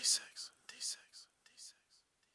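A whispered voice trailing off in short, breathy repeats, each fainter than the last, with no music under it.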